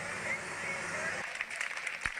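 Ballpark crowd ambience: a steady murmur of crowd noise with scattered faint voices, thinning slightly after about a second.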